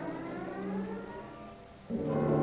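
Symphony orchestra strings with solo viola playing slow upward-sliding glissandi that fade away, then the orchestra comes in suddenly and loudly with a sustained low chord just before the end.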